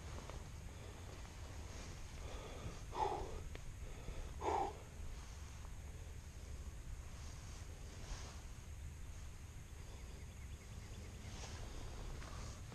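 A person's two short breaths, about a second and a half apart, over a steady low rumble, with faint water movement as a hand searches through a shallow pool.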